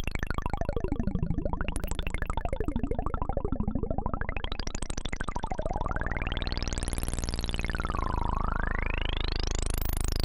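Moog Mavis monophonic analog synthesizer playing a fast, evenly pulsing tone whose sound sweeps up and down as its knobs are turned. Two long sweeps rise and fall in the second half.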